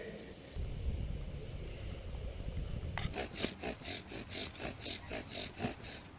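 A low rumble, then, from about halfway, quick rhythmic rasping strokes at about four a second: a bow drill sawing a wooden spindle back and forth in a wooden hearth board to make fire by friction.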